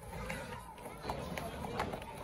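Background chatter of people standing outdoors, with a few sharp clicks of a walking horse's shod hooves on the wet road.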